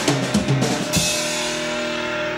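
Live garage-punk band ending a song: a quick run of drum-kit hits, the last about a second in, then the electric guitars ringing on a held chord.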